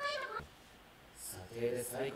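Anime character dialogue, speech only. A girl's high-pitched voice ends a shouted line, there is a short pause, and then a man's lower voice begins to answer.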